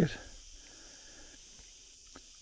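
Quiet outdoor background: a faint, even hiss of open-air ambience after a man's voice trails off at the very start.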